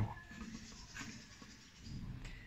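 Faint sound of a rebuilt car alternator's pulley being turned by hand, the rotor spinning on its bearings with only a light scratchy rustle and no grinding. This is the sign that the bearing noise is cured.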